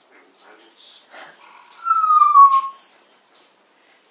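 African grey parrot vocalising: faint, quiet chatter, then one loud whistled note about two seconds in that slides slightly downward and lasts under a second.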